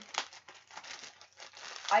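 Clear plastic packaging bag crinkling irregularly as it is handled and turned, with one sharper crackle just after the start.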